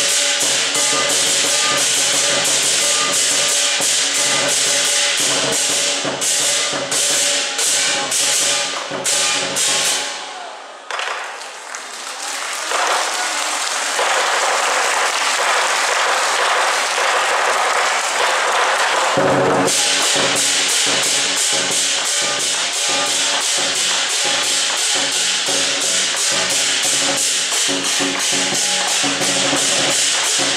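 Lion dance percussion: a large Chinese drum with clashing hand cymbals beating a fast, loud rhythm. About ten seconds in the drum drops away and for several seconds only a sustained cymbal wash rings on, then the full drum-and-cymbal beat comes back in.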